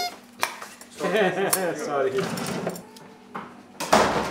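Sharp clinks and knocks of kitchen utensils, a knife on a wooden cutting board and metal on the counter, with a voice talking or laughing indistinctly in the middle.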